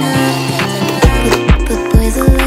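Background music: a song with a steady beat, where deep bass kicks come in about a second in.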